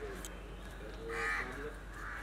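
A single harsh bird call, about half a second long, a second in, with faint voices underneath.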